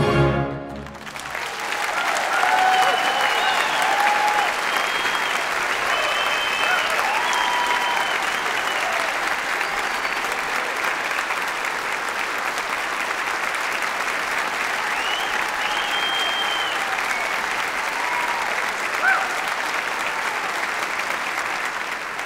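The tenor and soprano's final held note with the orchestra cuts off just after the start, followed by an audience applauding steadily with scattered cheers.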